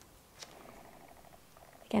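Faint, fast ticking rasp of a chip brush's stiff bristles being drawn back and slowly released under a fingertip, flicking off droplets of alcohol-activated makeup as spatter. It starts with a small click about half a second in.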